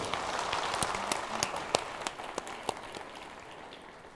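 Audience applauding, the clapping dying away over a few seconds.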